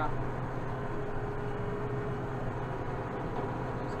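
Kubota M7060 tractor's four-cylinder turbo diesel running steadily under working load, heard from inside the cab as a low, even drone.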